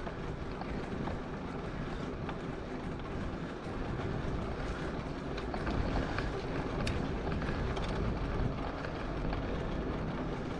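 Steady wind buffeting on the microphone and tyre rumble from a bicycle rolling along an asphalt bike path, with a few faint clicks.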